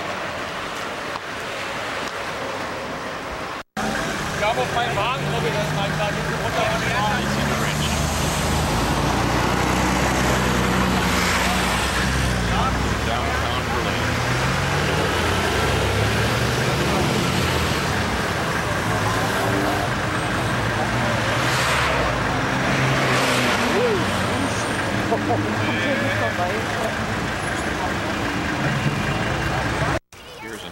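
Street traffic: car engines running and shifting in pitch as vehicles move off, with people talking. The sound gets louder after a sudden cut about four seconds in.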